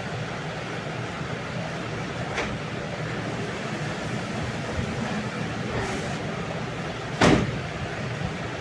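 A steady low mechanical hum fills the room, with a short loud sound about seven seconds in.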